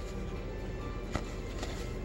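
Faint music from a film soundtrack playing on a TV, with steady held tones under it. A single light click sounds about a second in.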